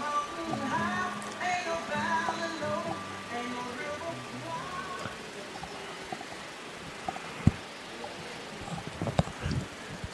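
Ballpark PA music, likely the batter's walk-up song, heard faintly from the stadium speakers. It plays for about the first five seconds, then fades. A single sharp knock comes about seven and a half seconds in.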